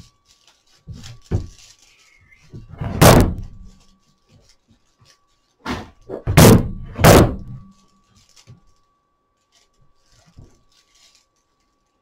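Heavy thumps from handling a whisk broom while its handle is being wrapped tight with string: one about three seconds in, then three close together around six to seven seconds, with faint rustling between them. A faint steady hum runs underneath.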